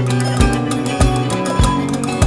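Music with a steady low beat, a thump a little under twice a second, over sustained pitched tones.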